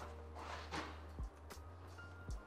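Quiet background music over a low steady hum, with a brief soft noise about half a second in.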